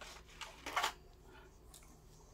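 Brief rustling of small plastic toy parts being handled: a short rustle about half a second in and a louder one just before a second in.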